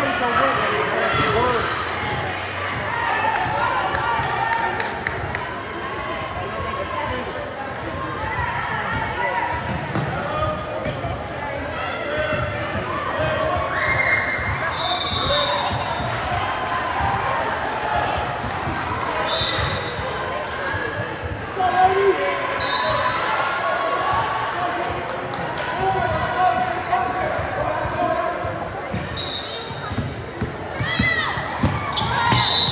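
Basketball bouncing on a hardwood gym floor during play, repeated thuds echoing in a large hall, over the chatter of spectators.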